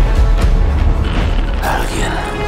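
Trailer sound effects of creaking, working metal machinery over a deep, steady rumble, with a louder swell of creaking near the end and music underneath.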